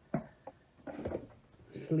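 Mostly quiet, with a brief hesitant voice sound just after the start and soft handling noise about a second in.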